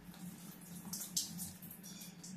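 Water trickling and dripping off a wet filter-media basket from an Aquael Unimax 250 canister filter into a bathtub, with a few irregular spatters, the loudest a little after a second in.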